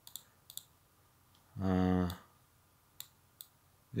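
A few sharp clicks of a computer control, two near the start and two about three seconds in. Between them, about halfway through, a man gives one drawn-out voiced hesitation sound.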